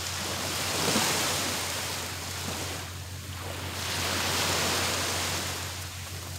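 Small waves breaking and washing up on a sandy beach. The surf swells twice, about a second in and again in the latter half.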